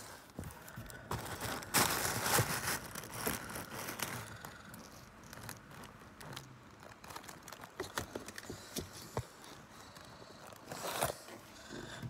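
Paper rustling and crinkling from close handling, with scattered light clicks and knocks. The loudest rustle comes about two seconds in, and another near the end.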